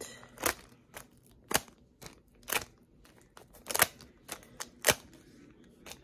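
Sharp snapping crackles, about one a second and five in all, with fainter crackles between, as the label and reflective coating is peeled and broken off a CD.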